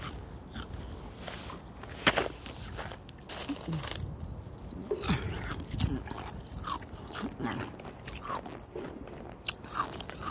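Crunchy nugget-style 'hospital' ice chewed right at the microphone: a string of irregular sharp crunches, with a loud one about two seconds in and another near the end.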